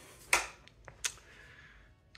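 Two short, sharp clicks about three-quarters of a second apart, the first the louder, with a couple of fainter ticks between them over a faint low background hum.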